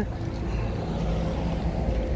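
Steady low rumble of vehicle engines running nearby, with a faint steady hum over it.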